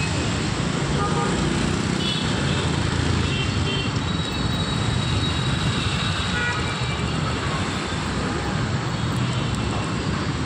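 Dense two-wheeler and auto-rickshaw traffic running, heard from among it: a steady drone of small engines and road noise.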